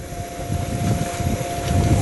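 Wind buffeting an outdoor camera microphone, an uneven low rumble, with a thin steady tone underneath.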